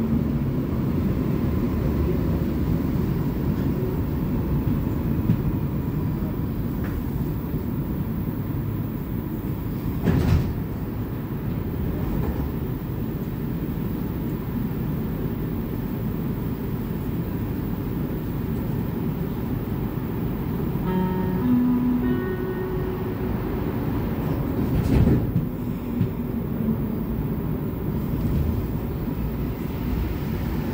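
Inside a Montreal metro Azur rubber-tyred train car running between stations: a steady low rumble. There is a short knock about ten seconds in and another later on, and a few brief tones partway through.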